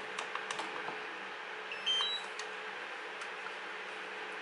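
A few sharp plastic clicks of buttons on a DJI Mavic Air remote controller, then, about two seconds in, its internal buzzer sounds a short rising three-note chime as the remote powers on, the buzzer having been dampened.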